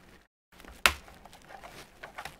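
Plastic RAM access cover on a laptop's base being pressed into place. One sharp click comes a little under a second in as a clip snaps home, followed by light taps and handling noise.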